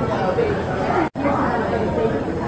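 Background chatter of excited young children's voices. The sound drops out for an instant about halfway through.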